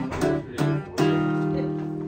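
Nylon-string cutaway acoustic guitar being strummed: a couple of short chord strokes, then a full chord about a second in that rings on.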